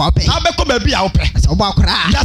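A man preaching fast and forcefully into a microphone, amplified, over background music with a steady bass.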